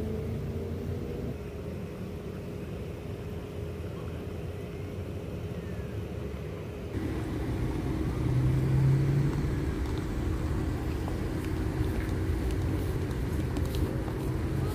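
Outdoor urban ambience: a steady low rumble of road traffic with a faint continuous hum. It swells louder about eight to nine seconds in, as of a car going by.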